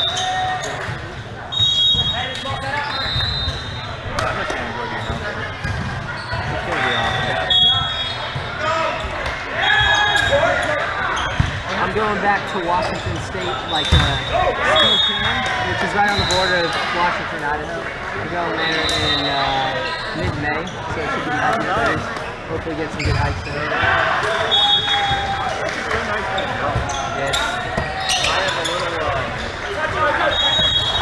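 Indoor volleyball play in a large echoing sports hall: players calling out and talking, a ball being hit or bouncing with sharp smacks, and short high squeaks of sneakers on the court floor every few seconds.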